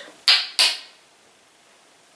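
A person sniffing twice in quick succession, two short, loud sniffs within the first second.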